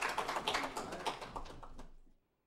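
A small group of people clapping, the separate claps easy to pick out, dying away toward the end.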